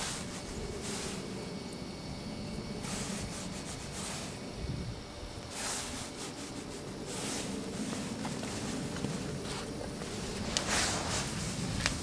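A small spatula dabbing and scraping blobs of auto cutting compound onto a sanded, painted steel van panel. It comes as about six short, soft scrapes a second or a few apart, over a steady low background hum.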